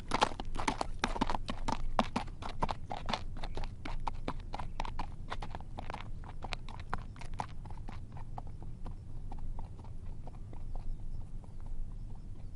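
Horse hooves clip-clopping, a fast, irregular run of hoofbeats that starts suddenly and thins and fades away over the second half, over a low steady rumble.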